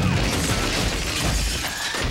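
Glass shattering and crashing: a dense, noisy clatter with a heavy knock right at the start.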